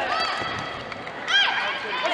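A man's short, loud shout about one and a half seconds in, over the murmur of a sports hall, following a quieter call near the start.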